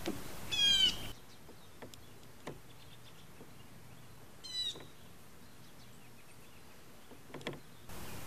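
A songbird calling twice, each time a quick run of high chirps: once about half a second in and again about four and a half seconds in.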